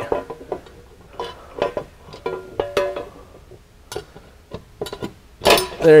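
A metal floorboard skid plate clinking and scraping against the frame and the neighbouring skid plates as it is worked by hand into a tight fit, with scattered clicks and a few short ringing tones.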